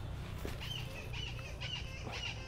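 A small bird chirping, a series of short high chirps two or three a second, over a steady low background rumble. A light knock comes about half a second in.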